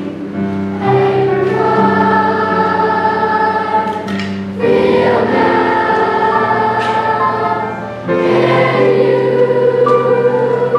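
Large mixed school choir singing with digital piano accompaniment, in long held phrases. New phrases begin about a second in, near the middle and about eight seconds in.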